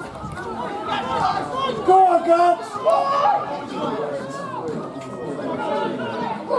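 Several voices shouting and calling over one another during open play, as players and onlookers call across a football pitch. The loudest is a held shout about two seconds in.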